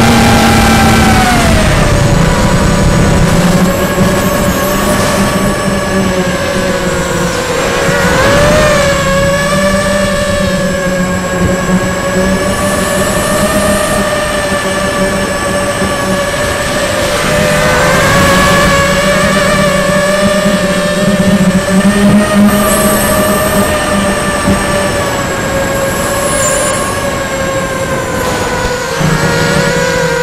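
FPV quadcopter's motors and propellers whining, heard from its onboard camera, with rushing air behind. The pitch drops about a second in and then wavers up and down with the throttle.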